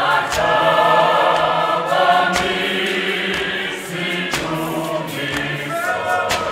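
Mixed church choir of men and women singing together in harmony, with a low held men's line under the higher voices. Sharp beats sound at intervals behind the singing.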